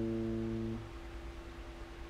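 A strummed guitar chord ringing out and dying away, then stopping suddenly just under a second in. A faint steady hum remains after it.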